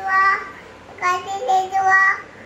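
A young child's high voice in sing-song phrases: a short one at the start, then a longer, drawn-out one from about a second in.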